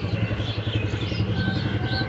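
A small engine running steadily nearby, a continuous low drone with a fast, even throb.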